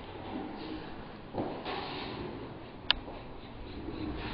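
Sliding patio door being opened: a low rumble of movement, then a single sharp click just before three seconds in.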